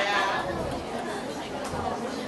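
Students chattering in a classroom, several voices talking at once. One voice stands out at the start, then the talk settles into a general babble.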